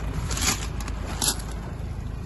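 Rustling and brushing handling noise as a handheld camera is moved into a pickup's cab, with short scrapes about half a second and a second and a quarter in, over a low steady rumble.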